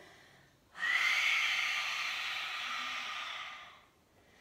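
A woman's long open-mouthed exhale: a breathy rush that starts abruptly about a second in, lasts about three seconds and tapers away.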